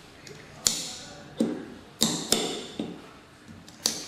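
Precision optical-fibre cleaver being worked by hand to cleave a bare fibre: about six sharp clicks and snaps from its clamps, lid and blade carriage.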